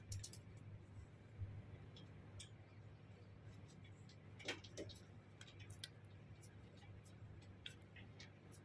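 Faint, sparse metallic clicks of a screwdriver turning a small screw in the neck of a stainless steel lever door handle, over a low steady hum.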